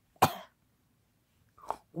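One short, sharp cough about a quarter second in, then silence and a quick breath just before speaking resumes.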